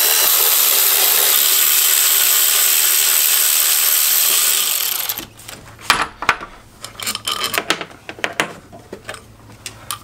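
Cordless ratchet running steadily for about five seconds as it backs out a throttle body bolt, then stopping. Scattered clicks and knocks follow as tools and parts are handled.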